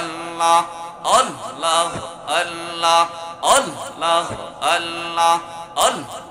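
A man's voice chanting a zikr into a microphone, one short devotional phrase repeated in a steady rhythm about every second and a bit. Each repetition opens with a sharp, breathy accent, then glides into a held note.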